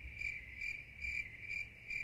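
Cricket chirping, a steady high chirp repeating about two to three times a second: the classic 'crickets' sound effect laid over an awkward pause, with the street sound muted under it.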